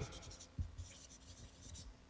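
Felt-tip marker writing on paper: a series of short, faint scratchy strokes as characters are drawn.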